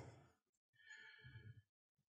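Near silence between spoken phrases, with a faint breath from the speaker about a second in.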